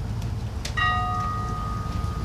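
A bell struck once about three quarters of a second in, its tone ringing on and slowly fading.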